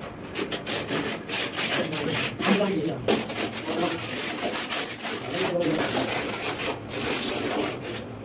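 A trowel scraping and spreading cement mortar over the back of a large ceramic tile, in many short, irregular strokes.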